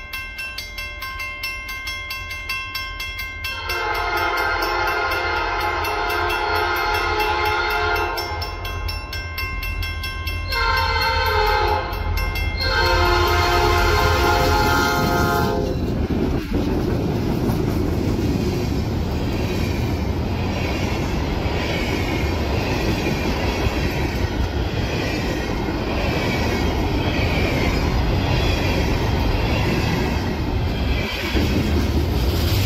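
Freight locomotive air horn sounding at a level crossing: a long blast, a shorter one that bends down in pitch, and another long one as the locomotives go by, over the steady ringing of the crossing bell. After about the middle, the locomotives pass and the freight cars roll through with a steady rumble and a rhythmic clicking of wheels over the rail.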